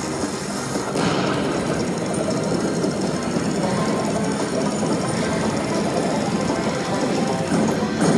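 Slot machine sound effects from a Lock It Link Eureka Reel Blast bonus: game music, then from about a second in a dense, rattling blast sound as the dynamite on the middle reel blows and turns into a gold nugget prize that climbs to 8000. The tune returns near the end.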